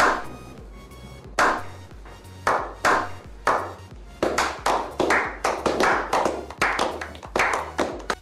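A small group of people clapping in a slow clap that starts with single claps spaced a second or more apart and speeds up to several claps a second from about halfway through, over background music.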